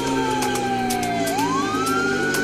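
Tech house mashup in a breakdown: a siren-like synth tone slides down in pitch, then sweeps back up about a second in, over ticking hi-hats, with the deep bass dropped out.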